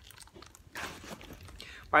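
Rustling and crinkling from a small coated-canvas pouch being handled and put back into a large tote bag, with a few light clicks, starting about a second in.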